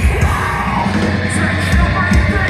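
Metalcore band playing live through a large PA, with shouted vocals over fast, pounding kick drums and heavy guitars, loud and dense as heard from within the crowd.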